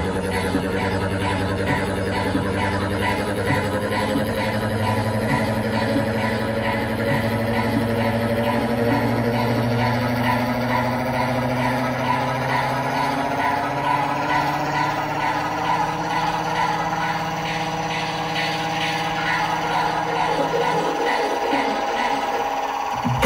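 Electronic dance music through a festival sound system, heard from within the crowd: a breakdown of sustained synth tones, some slowly rising, over a fast repeating high figure. The bass falls away near the end.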